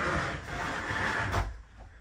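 Curved sliding door of a radius shower being rolled open along its track: a short rushing slide that ends in a sharp knock about one and a half seconds in.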